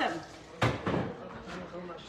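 A single sharp knock about half a second in, amid faint voices in a kitchen.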